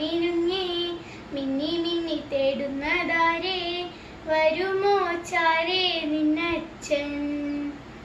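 A young girl singing a song unaccompanied, in short phrases with brief pauses between them.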